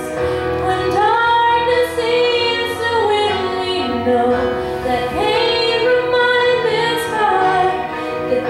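A young girl singing a slow song solo, holding long notes and sliding between pitches.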